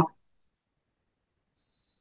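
Near silence: the audio drops out completely in a pause between words, with a faint, thin, steady high tone near the end.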